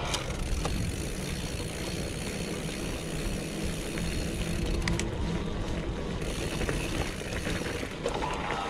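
Mountain bike rolling down a loose gravel track: steady tyre and ride noise with a low rumble, and a few sharp clicks from stones or the chain, one about half a second in and a couple around five seconds in.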